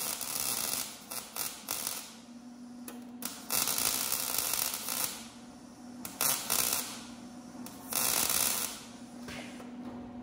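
MIG welding arc on a steel truck frame, sizzling in about five bursts of up to a second and a half as the welder lays short stitch welds, the arc stopping and starting between them. A steady low hum runs underneath.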